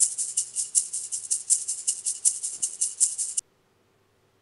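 A percussion loop sample from Ableton Live Lite's sample library playing as a browser preview: rapid, even, shaker-like strokes, about eight a second. It cuts off suddenly about three and a half seconds in.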